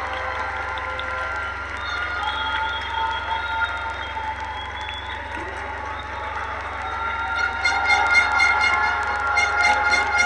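Crowd applauding and cheering in a large hall. About three quarters of the way through, music with a regular beat starts up under the applause.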